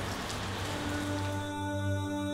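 An even hiss of background noise over a low steady hum, joined about halfway through by soft ambient background music of long held drone-like notes.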